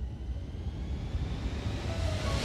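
A low rumbling noise with a faint tone that rises slowly in pitch, like a whoosh, between two stretches of music.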